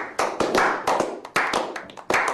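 A small group of men clapping their hands, sharp claps coming about three a second in an uneven rhythm.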